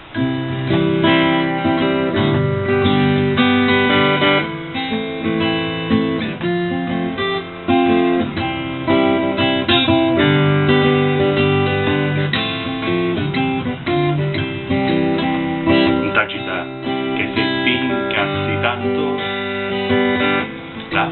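Acoustic guitar strumming a steady series of chords, changing about every second or two: the instrumental introduction before the vocal comes in.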